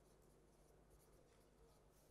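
Near silence: room tone with a low steady hum and a few faint, brief scratchy sounds.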